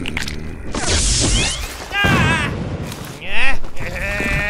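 Cartoon fight sound effects: a crashing burst about a second in as the ground is smashed and rubble flies, followed by wordless grunts and a loud yell near the end.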